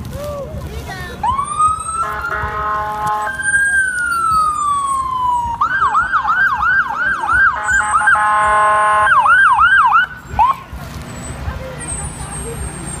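Fire truck siren: a rising wail, a slow falling sweep, then fast yelp cycles of about four a second, broken twice by steady horn blasts. It cuts off about ten seconds in, followed by one short chirp.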